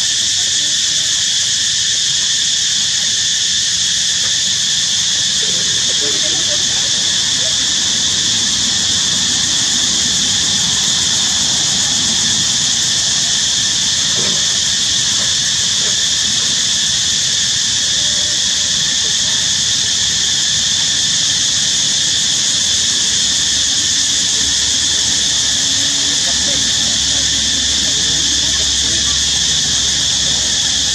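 A steady, loud, high-pitched drone of insects chorusing without a break, with faint low sounds underneath.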